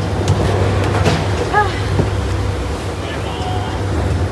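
Gondola lift running, with a steady low mechanical hum and a few sharp clicks and knocks as a cabin is boarded.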